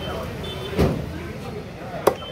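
A butcher's cleaver chopping once through chicken into a wooden log chopping block, a heavy thud a little under a second in.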